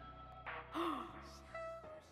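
Quiet background music with a short breathy vocal sound from a woman close to the microphone, like a sigh or soft laugh, a little under a second in.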